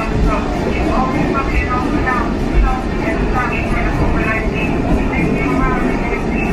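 Garbled subway conductor's announcement over an R46 car's PA speakers, muffled and hard to make out over the steady rumble of the train running on the track.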